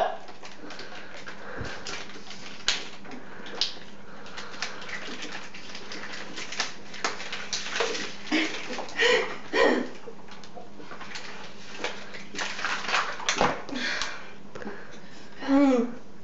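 Several people chugging water from plastic bottles in a race: irregular gulps, gurgles and gasps, with short crackles from the plastic bottles.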